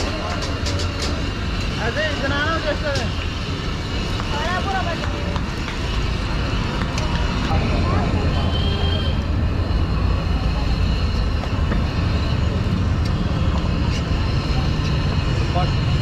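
Busy street ambience: a steady low rumble of passing traffic with voices of people nearby. The rumble grows a little louder about six seconds in.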